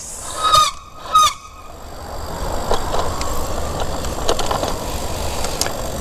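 Wind rumbling on the microphone with tyre and road noise while riding a bicycle, building up over the last few seconds. It comes after two short honk-like sounds about half a second and a second in.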